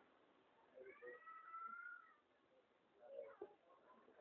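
Near silence: room tone, with one faint, drawn-out high call about a second in.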